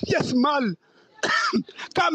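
Speech only: a voice talking in short phrases, with a brief pause about a second in.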